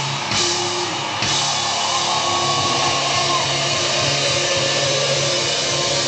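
Live rock band playing loud: electric guitar over a drum kit.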